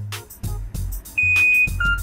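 Electronic lock of a Hellobike shared bike beeping as it unlocks after its QR code is scanned: one long high beep about a second in, then a short lower beep. Background music with a steady beat plays under it.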